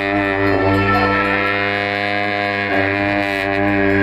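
Tibetan monastic ritual horns playing long, steady droning notes that change pitch a few times.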